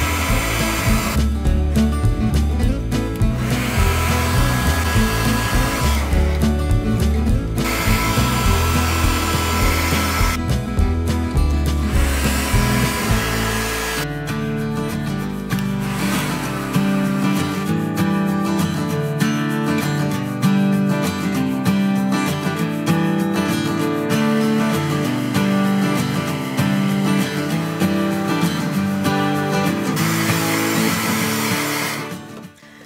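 Small handheld hair dryer blowing on a wet, watered-down patina paint to dry it, running in bursts with short breaks in the first half, over background music.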